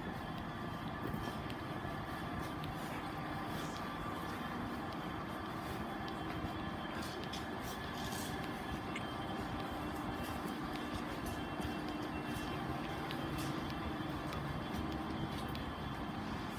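Steady hum of a train standing at a station platform, with faint steady tones running through it and a few faint scattered clicks.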